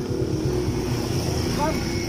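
Low, steady rumble of busy street-market background noise, with a voice heard briefly near the end.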